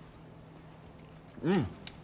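A man's single appreciative "mm" while tasting food, a short rise-and-fall hum about one and a half seconds in, over low room tone with a faint steady hum.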